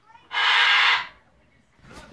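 A sharp, loud hiss lasting about two-thirds of a second, starting about a third of a second in, over faint television sound.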